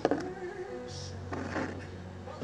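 Water poured from a plastic basin into a glass jar, in short splashes, over a low steady hum.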